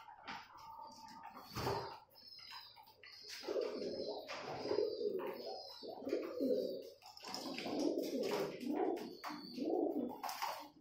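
Several domestic pigeons cooing over one another in a low, continuous murmur that builds about three and a half seconds in. Sharp clicks and taps from beaks pecking seed on the plastic tray, and a few short high notes, run over it.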